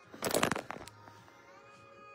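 Background music playing quietly. A brief loud crackling noise burst cuts across it from about a quarter second in and lasts about half a second.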